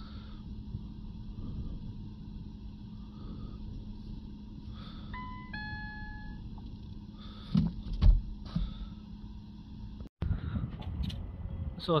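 Steady low hum in the car cabin, with a short two-note electronic chime, the second note lower, about five seconds in, followed by a few knocks a couple of seconds later.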